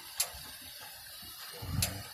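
Steady faint outdoor background hiss with a light click shortly after the start and another near the end, with a brief low rumble just before the second.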